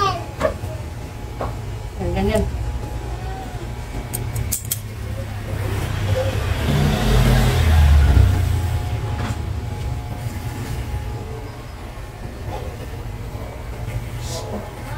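Electric hair clipper running with a steady low buzz as it cuts a child's hair. A broader rumbling noise swells and fades around the middle. Brief vocal sounds come near the start.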